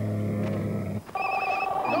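A camel's low, drawn-out groan lasting about a second, then a satellite phone's trilling ring starts up again.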